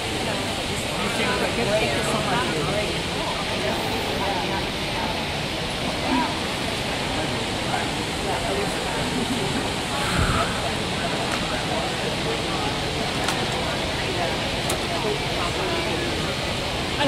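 Indistinct chatter of many people over a steady rush of water from a plaza fountain, with a brief low thump about ten seconds in.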